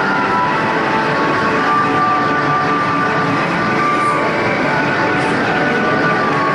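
Arcade din: a dense, steady wash of game machines' electronic tones and jingles overlapping one another.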